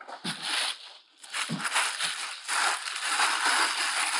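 Plastic bag and cloth rustling and crinkling as they are handled, in several irregular bursts with a brief pause about a second in.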